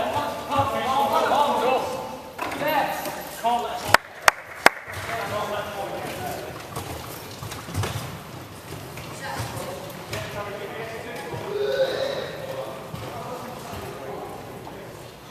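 Indistinct voices of players calling out on a wheelchair basketball court, with three sharp knocks in quick succession about four seconds in.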